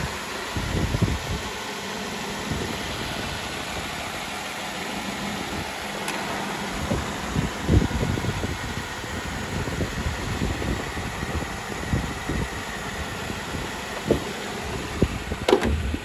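2016 Jeep Wrangler's 3.6-litre Pentastar V6 idling steadily, heard from above the open engine bay, sounding just the way it should. A few short low knocks come through, one about halfway and a couple near the end.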